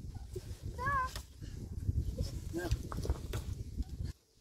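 A tree branch being bent and snapped off by hand, with a few sharp cracks, over a low rumble. A short high call is heard about a second in.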